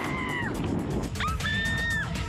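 Two long, high-pitched screams from people in bungee-jump free fall. The first tails off about half a second in and the second starts just after a second in. Both are heard over background music with a steady beat.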